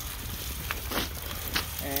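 A Solo 421 hand-cranked chest spreader being cranked as it throws salt granules onto a concrete sidewalk: a steady hiss with a few short, sharp ticks.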